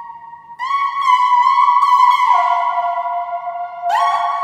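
Software synth lead in FL Studio playing a slow melody of long held notes that slide from one pitch to the next in a smooth, theremin-like tone. A brief drop near the start, a step down a little past halfway, and a rising glide into a new note near the end.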